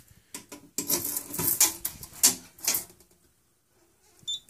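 Keys jangling on a ring while a key is worked in the lock of a Simplex 4004 fire alarm panel's metal cabinet door and the door is opened: a quick run of metallic clicks and rattles that stops about three seconds in.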